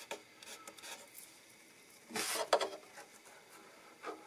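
Faint handling of a clamped guitar: a few light clicks in the first second, then a short wood-on-wood rubbing scrape about two seconds in as a small wooden wedge is pushed between a spool clamp and the guitar's side to level out a glued side crack.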